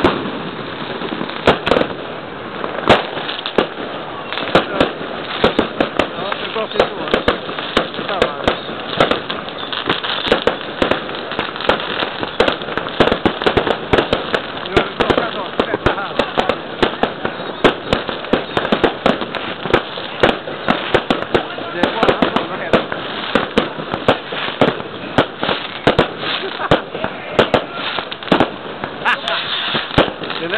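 Fireworks and firecrackers going off without pause: dense, irregular bangs and crackles, many overlapping.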